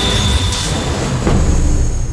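Theme music of a TV series title sting, with whoosh and hit sound effects about half a second and a second and a quarter in.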